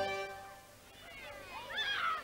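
The final held chord of a theme tune dies away, then children's high voices calling and shrieking at play come in, faint at first and louder near the end.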